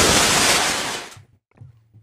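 Car-crash sound effect played on air: the long crashing noise that follows a brief tyre screech, fading out about a second in.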